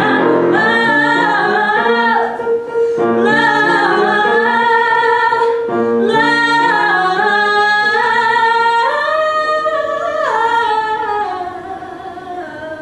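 A woman singing a musical-theatre ballad with piano accompaniment. About nine seconds in she holds a long high note that steps up in pitch, and the sound fades near the end.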